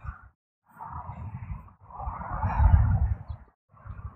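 Wind buffeting and movement rustle on a body-worn microphone as the wearer runs and shuffles, in three bursts of rumble and hiss broken by short silent gaps.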